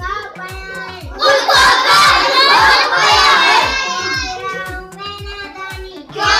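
A girl's voice chanting a Hindi poem in a sing-song melody, over a steady low beat of about four thumps a second; the voice is louder between about one and four seconds in and softer towards the end.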